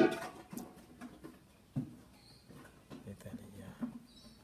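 A short, loud vocal exclamation at the start, followed by scattered low murmurs and small soft noises.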